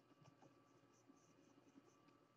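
Very faint scratching and tapping of a stylus on a graphics tablet, in many short, quick strokes and dabs as stubble is sketched in.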